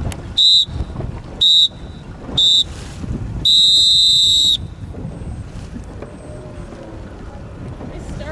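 Race start signal counting down: three short, loud, high electronic beeps a second apart, then one long beep of about a second marking the start. Wind buffets the microphone throughout.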